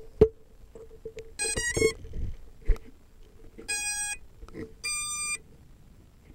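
A sharp handling click, then a short stepped electronic chime and two separate steady electronic beeps, about a second apart: the start-up and record tones of a small camera being handled and set down.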